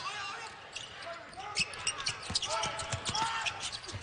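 Basketball being dribbled on a hardwood court, several bounces during play, with voices in the arena.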